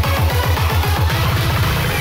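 Loud electronic dance music from a live DJ set: bass-heavy kick drums that drop in pitch with each hit, speeding up into a rapid roll in the second half, as in a build-up.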